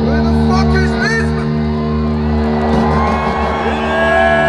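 A steady, beatless electronic drone from a large concert PA, with a festival crowd whooping and shouting over it.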